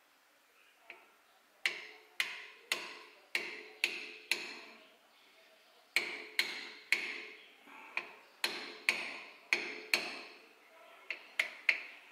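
Copper-faced hammer tapping a small pin into a part held in a bench vise: two runs of light, evenly spaced taps about two a second, each with a short metallic ring, then a quicker cluster of lighter taps near the end.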